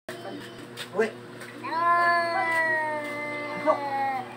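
A domestic cat giving a short call about a second in, then one long, drawn-out meow lasting about two seconds that slowly falls in pitch, and a brief upward call near the end.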